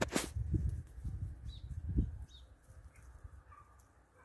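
A few faint, short chirps from pet budgerigars over a low, uneven rumble on the microphone, with a sharp click at the very start.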